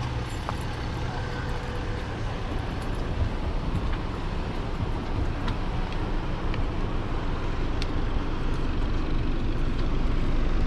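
Steady low rumble of idling vehicles, with a few light clicks over it.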